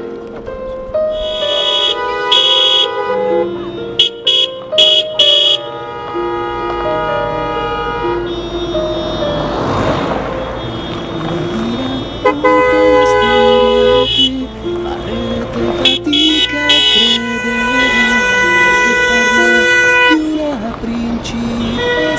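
A band plays a tune while car horns honk in short blasts, a cluster of honks in the first few seconds and more in the second half. A car drives past about midway.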